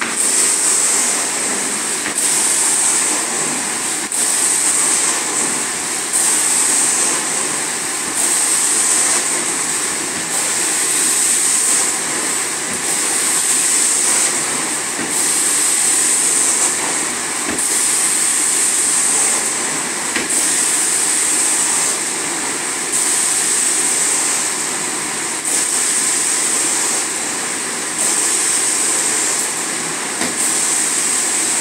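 Carpet-cleaning extraction wand drawing air and water through its vacuum hose, a steady rushing noise with a high hiss that swells and fades about every two to two and a half seconds as the wand is pushed and pulled across the carpet in strokes. The area is being rinsed and extracted in repeat passes after a pet-odour treatment.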